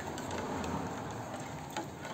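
Plastic spoon stirring soap solution in an aluminium saucepan, giving faint scraping and a few light ticks against the pot over a soft steady hiss.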